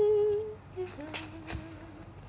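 A woman humming with her mouth closed: a held note that stops about half a second in, followed by a few short, lower notes. Two faint clicks sound in the second half.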